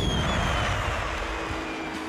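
Snowmobile engine running, with a high whistling tone falling slowly in pitch over the first second or so and a low steady tone joining halfway through.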